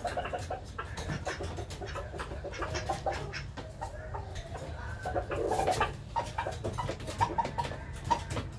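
Rooster clucking in short calls, among scattered light taps and clicks.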